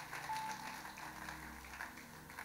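Soft background music of sustained low chords, held steadily under a pause in the sermon.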